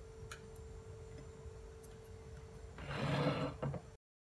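Quiet room tone with a steady hum. About three seconds in there is a brief, louder rustle-like sound.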